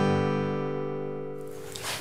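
Short musical bridge: a single strummed guitar chord ringing out and slowly fading.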